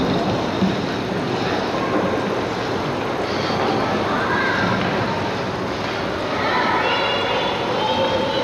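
Steady wash of noise with distant, indistinct voices in an echoing indoor ice rink; the voices come through more clearly near the end.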